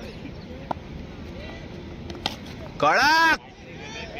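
A tennis ball struck by a cricket bat with a sharp crack about two seconds in, hit for six. A loud, short shout follows, rising and falling in pitch, over the chatter of players.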